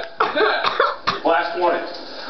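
Voices in short, broken outbursts with coughing mixed in.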